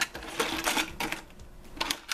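Small hard-plastic toy dinosaurs clattering against each other and against a clear plastic tub as a hand rummages through them: a run of light clicks that eases off in the middle and picks up again near the end.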